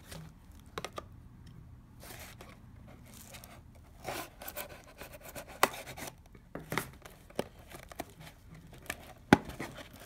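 A small cardboard box being handled and turned over by hand: scattered scrapes and rustles of cardboard, with sharp taps that come more often in the second half, the sharpest one shortly before the end.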